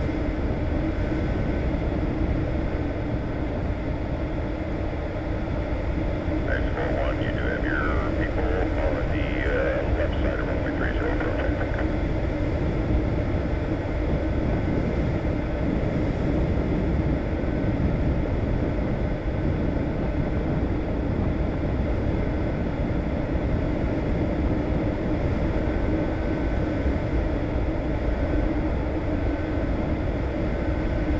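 Steady aircraft engine drone heard inside a cockpit, holding one low tone. A short muffled radio voice comes in about a quarter of the way through and lasts a few seconds.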